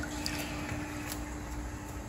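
Faint trickling and splashing of liquid as coral food mixed with tank water is poured into the aquarium, with a few small clicks and a steady low hum that stops near the end.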